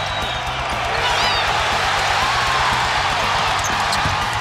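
Arena crowd noise with a basketball being dribbled on the hardwood court, and a short high squeak about a second in.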